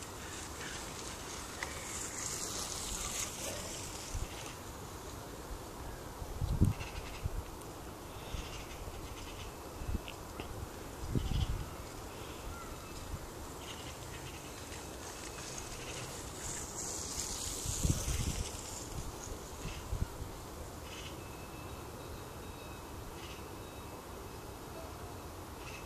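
Faint outdoor background noise, with two swells of hiss, one a couple of seconds in and one about two-thirds of the way through, and a few short low thumps.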